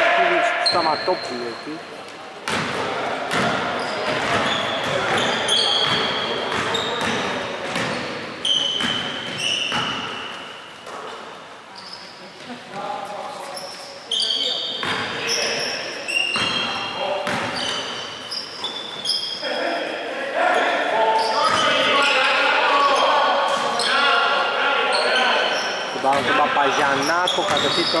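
A basketball bouncing on a wooden gym floor in repeated knocks, with short high squeaks mixed in, all echoing in a large hall.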